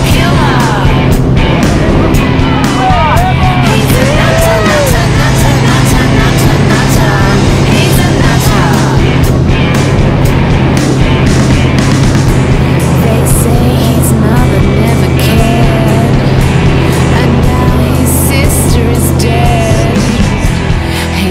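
The engine and propeller of a light single-engine plane droning steadily at takeoff power through the takeoff roll and climb. A rock song with singing plays over it.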